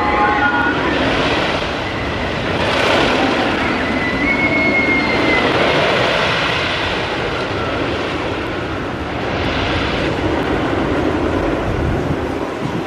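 GCI wooden roller coaster train running along its wooden track with a steady rumble that swells about three seconds in and again near ten seconds.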